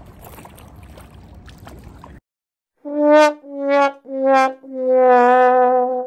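Faint rushing river water that cuts off after about two seconds, then a 'sad trombone' brass sound effect: four notes stepping down in pitch, three short and the last held long. It is the comic sign of a letdown, here a fish that was only snagged.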